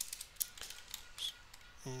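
Computer keyboard being typed on: a quick, irregular run of key clicks, mostly in the first half.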